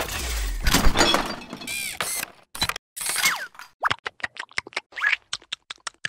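Cartoon sound effects: a heavy thunk at the start, then clattering and breaking noises with a few short squeaky glides, then a quick run of sharp taps in the last two seconds.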